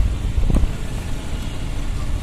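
Steady city traffic noise heard from a moving motorbike, a low engine and road rumble, with a brief knock about half a second in.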